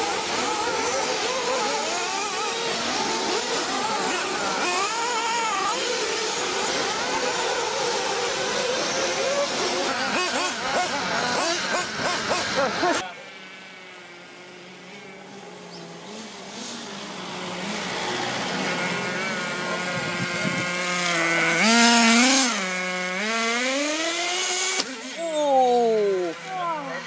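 Radio-controlled cars running. A loud, dense mix of engine and track noise cuts off suddenly about halfway through. Then one RC car's motor is heard revving up and down in pitch, loudest about three-quarters of the way in.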